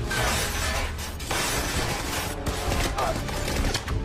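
Film gunfight sound effects: bursts of gunfire with bullets smashing into objects and debris shattering, two long bursts in the first two seconds and smaller ones after, over low action music.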